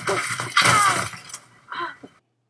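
Practice weapons clashing in a sparring bout, a sharp crack at the start and then about a second and a half of clatter, with grunts or shouts from the fighters.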